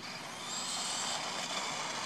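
Small battery-powered RC truggy (Animus 18TR) driving across asphalt: the whir of its electric motor and tyres swells over the first half second as it comes closer, then holds steady, with a faint high whine.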